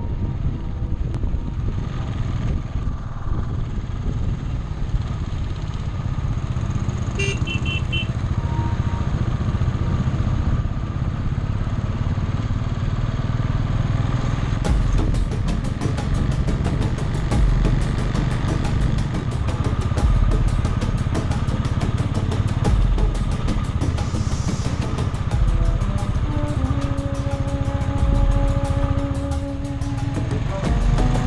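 Royal Enfield single-cylinder motorcycle engine running steadily under way, with a low rumble and wind rush on the microphone. From about halfway through, a dense rapid crackle joins in.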